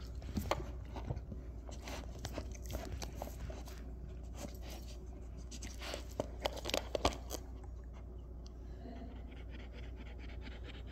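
A dog crunching and chewing a small treat, with licking and a few sharper clicks about six to seven seconds in.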